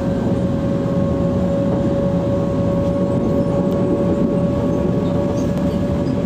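Cabin noise of a moving public-transport vehicle: a steady running rumble with a constant hum tone through it.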